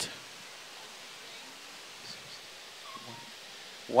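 Steady rush of whitewater rapids on a slalom course, a constant even noise with no breaks.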